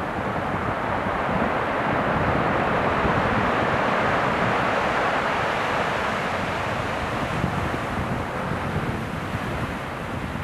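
Surf breaking and washing up a rocky cobble shore, a steady rushing that grows a little louder in the middle, with wind buffeting the microphone.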